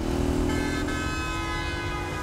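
City road traffic with a car horn sounding one long, steady blast.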